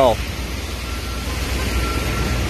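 Street traffic on rain-wet roads: a steady hiss of tyres and rain over a low engine rumble. From about a second in, a faint high beep repeats on and off.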